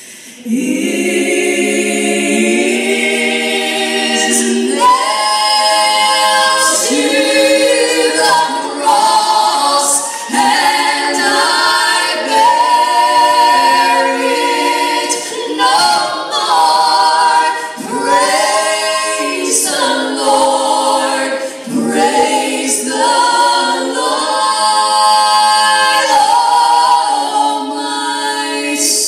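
Two women singing a Christian song unaccompanied, in harmony, through microphones on a stage sound system.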